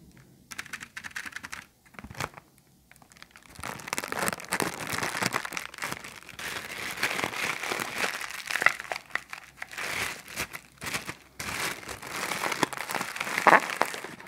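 Thin clear plastic bag crinkled and squeezed between the fingers: sparse crackles for the first few seconds, then dense continuous crinkling, with one sharp, loud crackle near the end.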